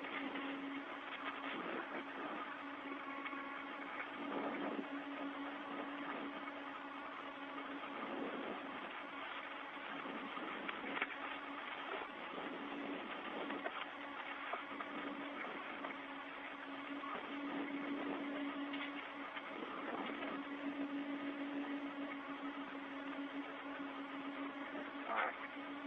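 Open space-to-ground radio channel with no one talking: a steady, muffled hiss and crackle, with a low hum that cuts in and out several times.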